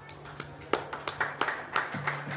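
Scattered clapping from a small audience: separate, irregular claps, several a second, rather than a full round of applause.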